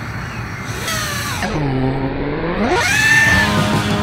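5-inch FPV quadcopter's brushless motors spinning props. Their pitch drops about one and a half seconds in, then climbs steeply near three seconds as the throttle comes up for takeoff. Background music plays underneath.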